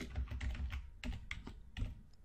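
Typing on a computer keyboard: about ten key clicks in an uneven run as a line of code is typed.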